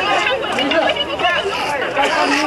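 A crowd of people talking over one another, many overlapping voices in a steady chatter.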